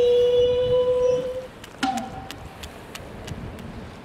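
The tail of an edited title-card sound effect: a loud held tone that stops about a second and a half in. After it comes quieter background noise with a string of light ticks, about three a second.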